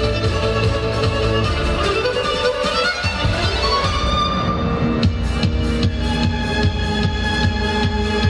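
Violin playing a melody over an electronic dance backing track. A rising sweep builds up, and a steady driving beat comes in about five seconds in.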